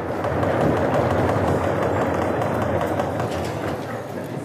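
A lecture-hall audience of students rapping their knuckles on wooden desks at the end of a lecture, the usual way of applauding at German-speaking universities. It sounds as a dense, steady rumble of many knocks that swells just after the start and slowly eases off.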